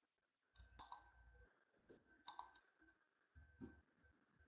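Computer mouse clicking: two quick double clicks about a second and a half apart.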